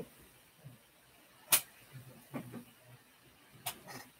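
Two short, sharp clicks about two seconds apart, the first louder, with a few faint low knocks between them, over quiet room tone.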